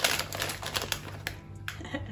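Rapid, irregular crackling of a foil crisp packet being handled, over background music with a steady low bass.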